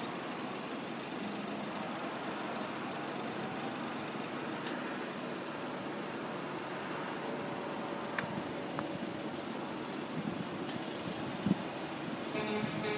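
Steady noise of road vehicles idling in a stopped queue, with a few faint clicks.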